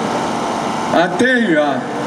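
A man's voice over a microphone, picking up again about a second in after a short pause. A steady background hum fills the pause.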